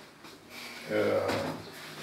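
Chalk knocking and scraping on a blackboard, with a brief stretch of low speech about a second in.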